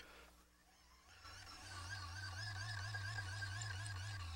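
Hand-cranked high-voltage insulation tester's generator running. It starts about a second in as a steady low hum with a higher whine that wavers slightly in pitch as the crank is turned, while it puts out about 540 volts at very little current.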